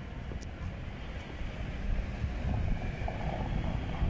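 Wind buffeting the microphone, a steady uneven low noise, over outdoor street ambience.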